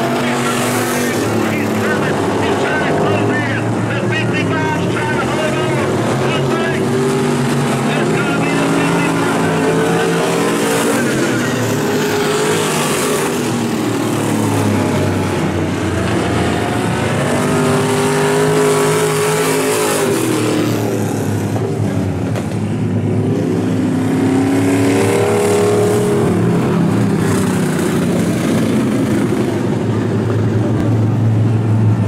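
Super Street dirt-track race car engines running around the oval, their pitch rising and falling as the cars accelerate and pass.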